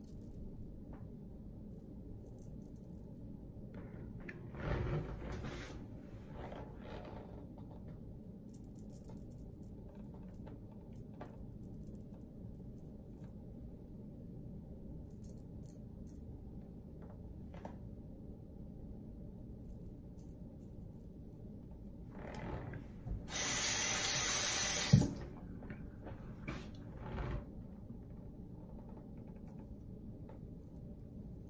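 Shavette blade scraping through lathered stubble on the neck in short strokes, faint over a steady low hum. Near the end a tap runs for about two seconds and stops with a sharp knock.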